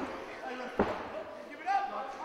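A single dull thud about a second in: a wrestler's body hitting the ring canvas, under faint voices.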